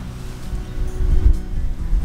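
Wind buffeting the microphone, a heavy low rumble that gusts up a little after a second in, with background music underneath.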